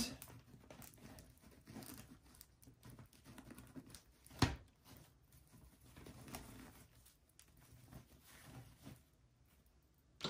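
Faint rustling and crinkling of burlap ribbon as hands scrunch it and work it onto a wreath frame, with one sharp click about four and a half seconds in.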